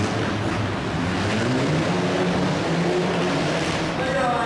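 Car engine running under throttle, its revs rising and falling as the car slides on the ice, over the steady noise of a large hall.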